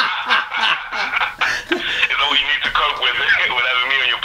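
A man's voice coming through a telephone line, thin and cut off in the upper range, talking and laughing with no clear words.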